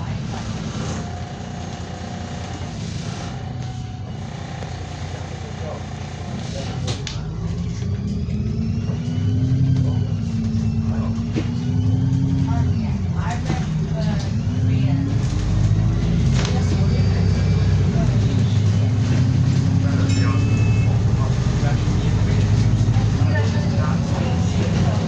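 Diesel engine of a single-deck bus heard from inside at the front, pulling away and accelerating. The engine note rises and falls with the gear changes and grows louder about seven seconds in.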